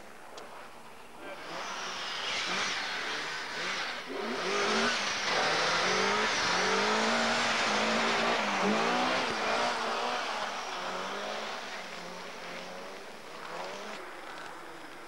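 Rally car driving past at speed on a snowy stage: the engine revs rise and fall as the driver works the throttle, growing loud as the car passes close about halfway through and fading afterwards, under a loud rushing noise.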